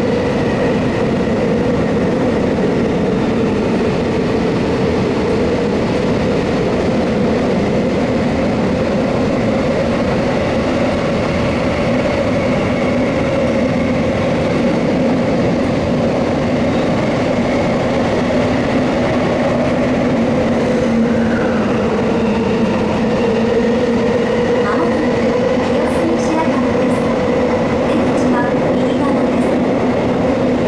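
Running noise inside a Tokyo Metro 18000 series subway car travelling through a tunnel: a steady rumble of wheels on rail under a low, even hum that wavers slightly in pitch.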